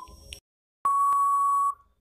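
Quiz countdown-timer sound effect: a last short tick-beep right at the start, then a single long, steady electronic beep of nearly a second signalling time out.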